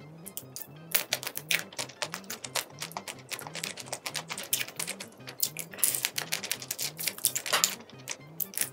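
Shells of sauced shrimp cracking and crackling as they are peeled apart by hand close to the microphone: a rapid run of sharp snaps, with a brief lull near the start. Soft background music with a steady low beat runs underneath.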